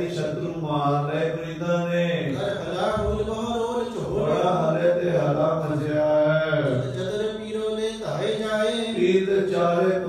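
A man's voice chanting in a melodic recitation style, with long held notes and gliding pitch, picked up through a microphone.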